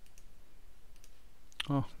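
A few faint, scattered clicks from a computer's input devices during a pause, with a man saying "ja" near the end.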